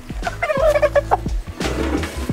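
A chicken calls as it is handled and lowered head-first into a metal killing cone, with a rustle near the end, over background music.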